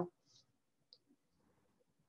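Near silence, with one faint short click about a second in.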